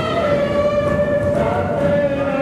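Group of voices singing in unison, holding one long drawn-out note that dips slightly in pitch about halfway through.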